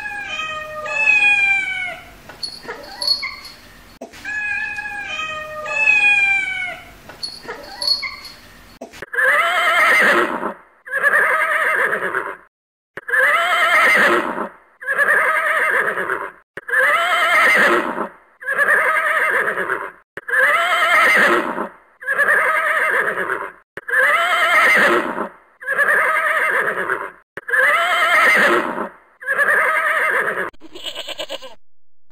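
House cat meowing several times, each meow sliding down in pitch. Then, after a sudden switch, a farm animal's short cry repeats at an even pace about once a second, each rising then falling, the same call over and over like a loop.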